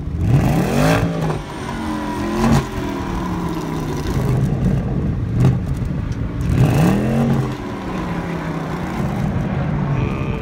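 Porsche Panamera Turbo's 4.0-litre twin-turbocharged V8 exhaust, revved twice with a rising then falling pitch, about half a second in and again near seven seconds, with short throttle blips between and a steady idle in the gaps.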